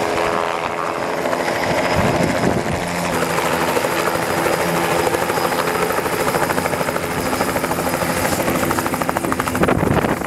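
Helicopter running, its rotor blades chopping in a rapid, even beat over a steady engine hum.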